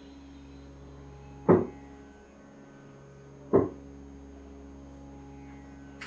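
Steady electrical hum, with two short, loud bursts about two seconds apart, the first about a second and a half in.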